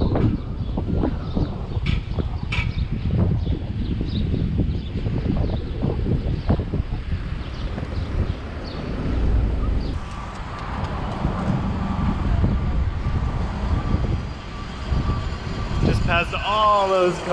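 Wind buffeting the microphone and tyre and road noise from a Lime electric moped riding along a city street, uneven and gusty throughout. A faint steady whine joins in about ten seconds in.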